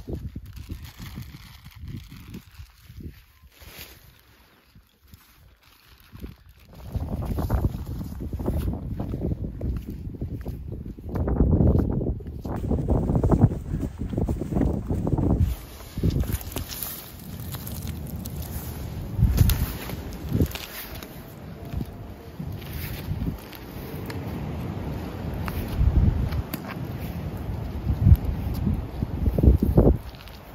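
Gusty wind buffeting the microphone, a loud uneven rumble that rises and falls from about seven seconds in. Before it, quieter rustling with light clicks.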